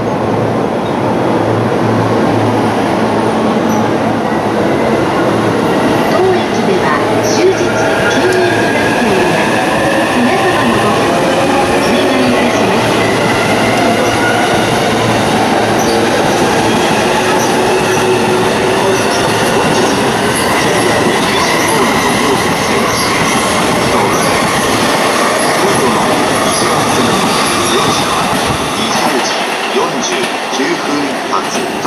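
JR Joban Line commuter electric train running out along the platform and picking up speed. Its motors give a slowly rising whine over loud rolling wheel noise, with a few clacks over rail joints and some wheel squeal.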